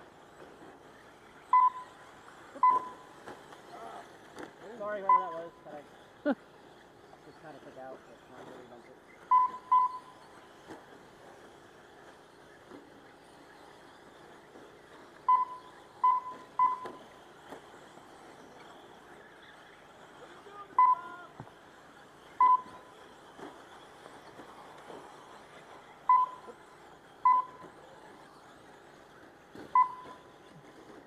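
Short electronic beeps from an RC race lap-timing system, one as each car crosses the timing loop. About a dozen come at irregular intervals, some singly and some in quick pairs or triplets as cars cross close together.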